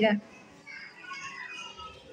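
Faint murmur of several children's voices in a classroom.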